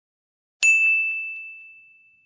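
A single bright metallic ding: one ringing tone that fades away over about a second and a half, with a few faint taps just after the strike. It is an intro logo sound effect.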